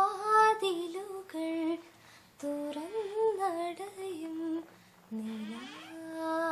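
A woman singing solo without accompaniment, in three phrases of long held notes that glide between pitches, with short pauses between them.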